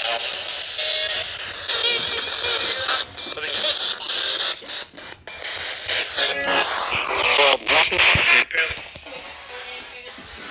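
Spirit box radio scanner sweeping through stations: choppy bursts of static with broken snippets of voices and music, cutting in and out with short gaps.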